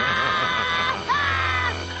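A dubbed cartoon boy's voice screaming in pain: two long, high-pitched held cries, the second starting about a second in, over background music.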